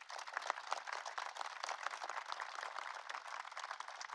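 Audience applauding, many hands clapping at once.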